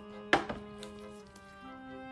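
A small glass jar knocked against a glass bowl: one sharp clink about a third of a second in, with a lighter one just after, as chopped green chilies and rice koji are tipped out. Soft background music with held violin notes plays throughout.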